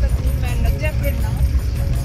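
Low, steady rumble of a vehicle's engine and tyres on the road, heard from inside the cabin.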